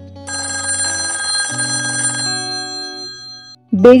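Landline telephone bell ringing once: a trilling ring about two seconds long that dies away, an incoming call, over soft background music.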